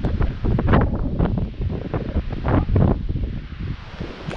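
Strong gusting wind buffeting the microphone, rising and falling irregularly.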